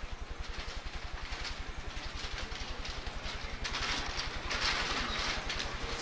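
A steady, evenly pulsing low hum under a hiss-like rustling noise that grows louder about four seconds in and then fades; no voices.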